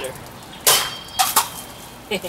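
A machete blade striking and slicing through an aluminium beer can: one sharp hit with a brief metallic ring, then two more quick knocks.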